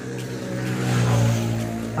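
A road vehicle passing close by, its engine hum and tyre noise swelling to a peak a little after a second in and then fading, the engine pitch dropping slightly as it goes past.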